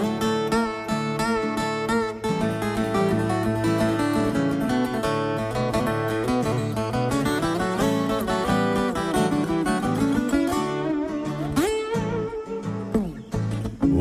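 Instrumental break in a Brazilian country song: plucked acoustic guitar playing a melody over a bass line, with no singing.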